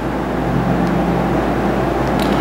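Steady low hum and hiss of background noise, with no distinct events.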